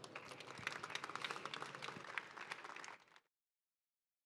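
Audience applauding, a fairly light patter of many hands clapping that cuts off suddenly about three seconds in.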